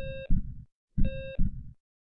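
Heartbeat sound effect with a heart-monitor beep: two lub-dub double thumps about a second apart, each opening with a short electronic beep.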